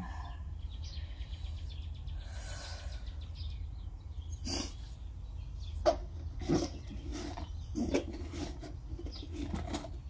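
Plastic containers and bags being handled in a cardboard box: scattered light knocks and rustles, a few sharp taps from the middle on, over a steady low rumble.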